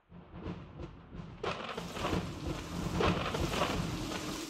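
Thunderstorm sound effect: a steady hiss of rain with a deep rolling rumble of thunder, starting softly and swelling about a second and a half in.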